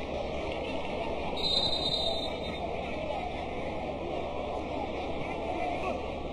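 Football ground ambience: a steady wash of crowd noise with faint distant voices calling.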